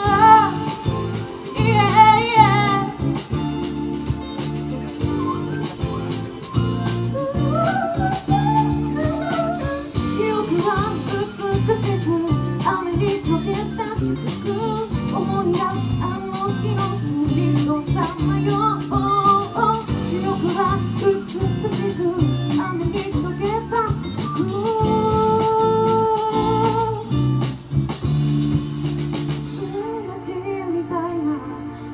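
Live band playing a pop-rock song through a PA: drum kit, bass and electric guitar, with a singer's voice over them, including long held notes near the end.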